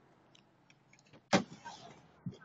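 A single sharp knock inside a car about a second and a third in, with a brief rustle after it, over quiet background and a few faint ticks.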